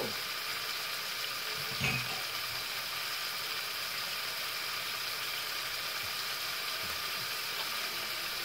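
Vegetables sizzling steadily in a frying pan, with a single short low knock about two seconds in.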